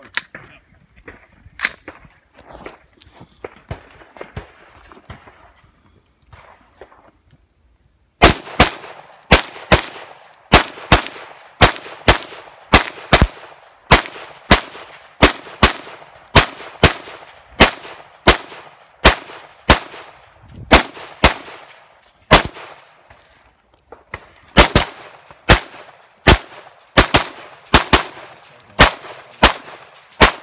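Semi-automatic rifle fired in a fast string, about two shots a second, starting about eight seconds in after a few quieter seconds with two single shots and movement. The string breaks once for about two seconds late on, then carries on.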